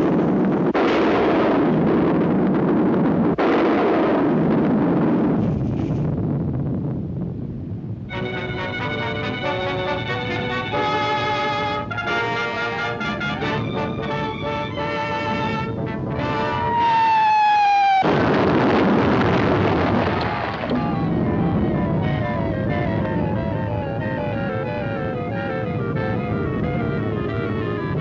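Dramatic orchestral film score with loud crashing sound effects in the first six seconds and again about 18 s in. Between them is a stretch of brassy sustained chords, ending in a falling pitch glide just before the second crash.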